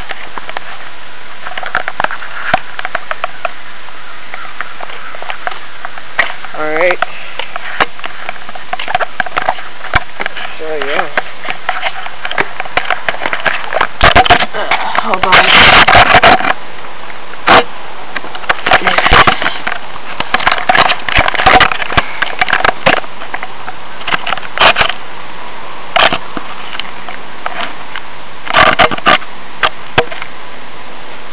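Camera microphone rubbing and knocking against a hoodie's fabric and drawstrings: irregular scrapes, crackles and clicks over a steady hiss, with a longer, louder stretch of rubbing about halfway through.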